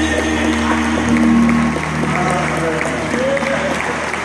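Audience applauding and cheering as a gospel song ends, the last piano and vocal chord still sounding under the clapping and scattered voices.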